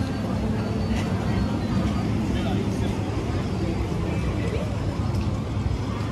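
Night street ambience: a steady low rumble of passing road traffic, with snatches of passersby's voices.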